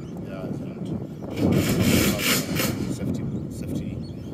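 Wind buffeting a phone's microphone in gusts, loudest for about a second and a half in the middle.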